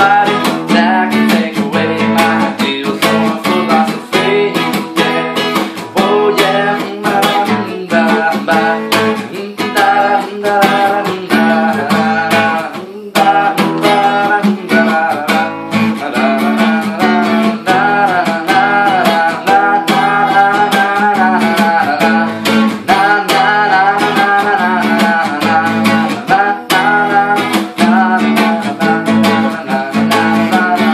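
Acoustic guitar strummed in a steady rhythm, with a man singing over it. There is a brief break in the strumming about 13 seconds in.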